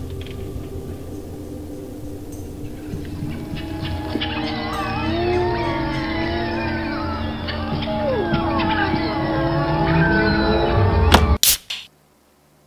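Horror soundtrack effect: a low rumbling drone that swells steadily, joined about four seconds in by layered screeching, wailing pitch glides, building to a peak and cutting off abruptly just before the end.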